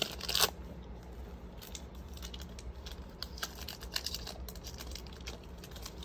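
Foil wrapper of a Topps baseball card pack crinkling and tearing in the hands as it is worked open, with a louder rip near the start and scattered crackles and ticks after. The pack is proving hard to open.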